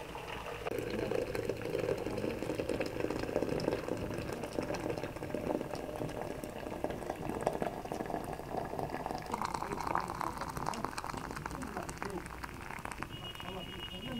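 Water poured in a steady stream from a metal kettle into a brass teapot of loose tea leaves, the filling sound rising in pitch as the pot fills.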